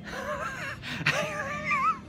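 A man laughing in two long, high-pitched, breathy wavering stretches, the second lasting about a second.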